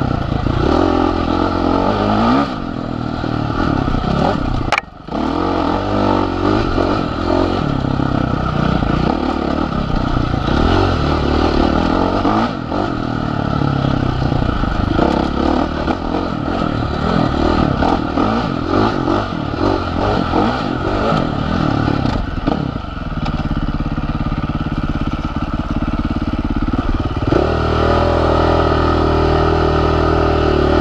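Husqvarna FC450's single-cylinder four-stroke engine on the move along a trail, its revs rising and falling constantly with throttle and gear changes. It cuts out briefly about five seconds in, and near the end it holds steady at higher revs.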